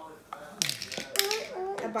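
A child talking, with a few light clicks and rustles of small plastic cups being pulled from a stack and handled on a tile counter.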